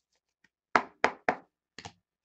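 A stack of trading cards knocked against a desktop: three sharp knocks in quick succession, then a quick double knock near the end.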